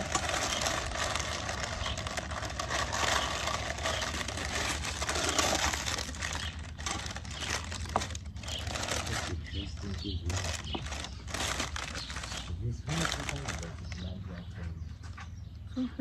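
A sheet of baking paper crumpled and folded by hand, a dense crinkling for the first six seconds or so, then on and off in short crinkles.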